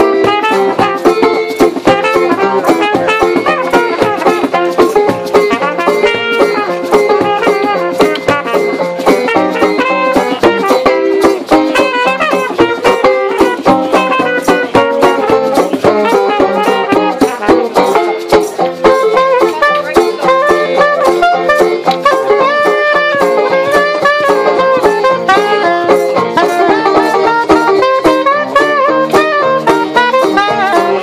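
Small live jazz band playing an instrumental passage: a trumpet leads over a strummed stringed instrument, and an alto saxophone is played near the end.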